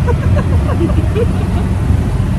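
Steady low engine and road rumble heard from inside a moving passenger vehicle's cabin, with short bursts of laughter over it.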